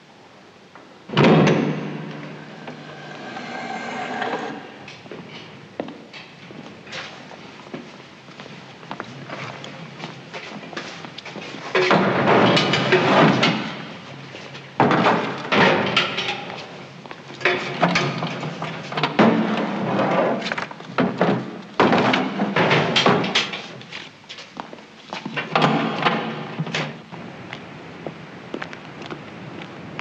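A steel vault door's lock mechanism gives a loud metallic clunk about a second in and rings on for a few seconds as the wheel handle is turned. A series of knocks and clatters follows later.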